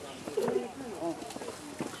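Faint background chatter of onlookers' voices, with a couple of light clicks.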